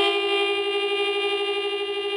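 Background music: a reedy wind instrument holds one long, steady note, two close pitches sounding together.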